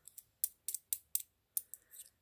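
Metal coins clicking together as they are handled and shifted between the fingers: a series of about eight short, sharp clinks, unevenly spaced.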